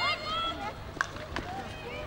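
Field hockey players' high-pitched shouts on the pitch, followed about a second in by a single sharp crack of a hockey stick striking the ball.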